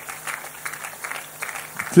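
Large crowd clapping and applauding, a dense, uneven patter, with a faint low steady hum underneath. A man's amplified voice starts right at the end.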